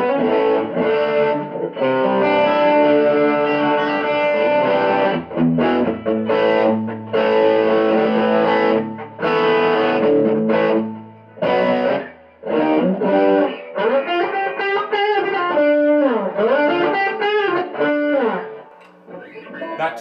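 Chapman ML-3 electric guitar played through an Ibanez Tube Screamer overdrive pedal: chords ringing out with short breaks for about the first twelve seconds, then single-note lead lines with string bends.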